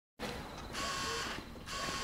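Whirring servo motors in a walking robot's joints, coming in two bursts of about half a second, each with a steady high whine.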